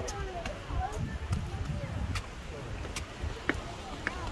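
Wind buffeting the microphone with a heavy, uneven rumble, over a few sharp footfalls on stone steps and faint voices.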